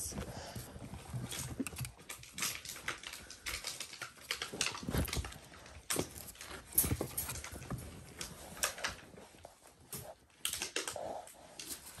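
Dalmatian puppies playing and scuffling: irregular clicks, scrapes and small knocks of claws and paws on a tiled floor and rug, with the odd small puppy noise.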